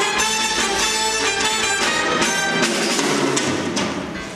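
A theatre pit band playing upbeat show dance music with a steady beat for a chorus dance number. Near the end the music gives way to a noisier wash.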